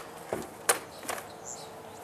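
A few light clicks and knocks as the quad's plastic body panels are handled and lifted off, with a bird chirping briefly about one and a half seconds in.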